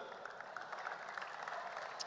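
Faint applause from a crowd, a steady low patter.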